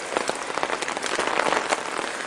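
Rain falling, with many close drops ticking sharply against the noise of the downpour, thickest through the middle.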